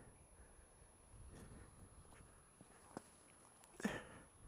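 Near silence, broken by a few faint ticks a little over a second in and one short click about three seconds in.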